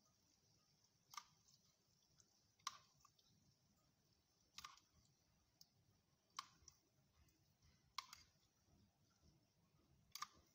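Near silence broken by five faint, sharp clicks, one every one and a half to two seconds: a spoon tapping against a small metal saucepan while melted butter is spooned over biscuits.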